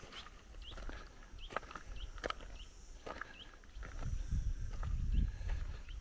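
Footsteps on dry soil and grass, with short bird chirps coming about once a second and some low rumbling from about four seconds in.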